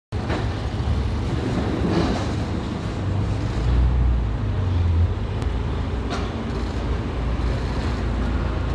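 Street traffic noise: a steady low rumble of road vehicles that swells briefly about halfway through.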